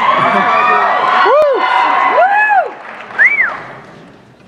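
Theater audience applauding and cheering, with several separate rising-and-falling whoops, dying away about three seconds in.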